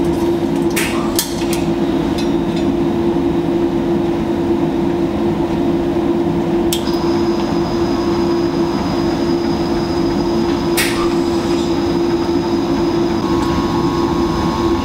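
Lab equipment hums steadily, with a few sharp metallic clinks as a stainless-steel beaker in a chain clamp is handled and set under a laboratory stirrer. About seven seconds in, a click is followed by a faint high whine that holds steady.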